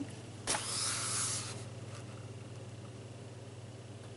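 A comic book page being turned: a brief papery rustle starts about half a second in, lasts about a second and then fades, over a low steady hum.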